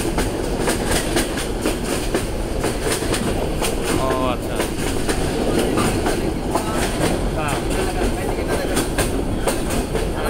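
Train running along the track, heard from inside a carriage: a steady rumble with frequent clicks and clacks of the wheels over the rails. Faint voices come through about four seconds in and again a few seconds later.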